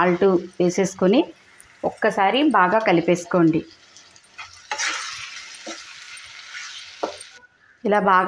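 Chopped tomatoes, onions and spices sizzling in a hot nonstick frying pan as they are stirred, a steady hiss for about three seconds in the second half that cuts off abruptly.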